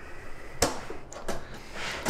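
Metal latches on a DeWalt plastic tool case being flipped open: a sharp click a little over half a second in, a few fainter clicks, and another click near the end as the lid comes free.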